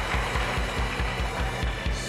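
Live house-band music: a quick, steady kick-drum pulse under a held bass line, played as a short stinger between answers.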